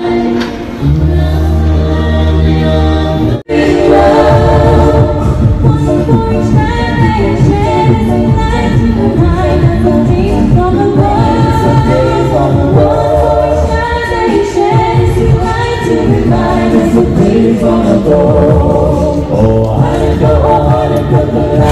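A small a cappella vocal group singing in several-part harmony into handheld microphones, amplified through a small speaker, with a deep bass voice beneath. The sound breaks off sharply for an instant about three and a half seconds in, then the singing carries on.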